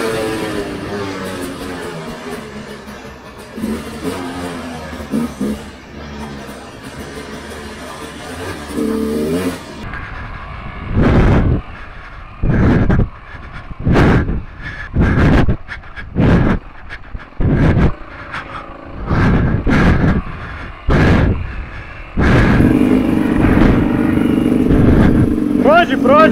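Two-stroke enduro motorcycle engine running and revving on a forest trail, heard from the moving bike. Midway comes a run of short, loud bursts of noise about once a second. The last few seconds hold a steady engine note that rises near the end.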